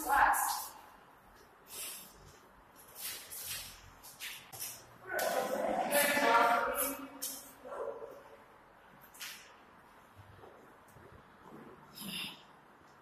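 Footsteps scuffing on gritty concrete stairs, irregular short scrapes, with a person's voice sounding for about two seconds around the middle.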